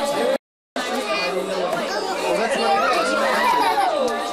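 Several people talking at once, adults and young children, in a busy overlapping chatter, with one high child-like voice gliding down near the end. The sound drops out to silence twice in the first second, where the camcorder recording restarts.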